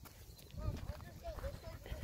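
Footsteps on a muddy dirt road, with a run of faint short rising-and-falling calls in the background from about half a second in.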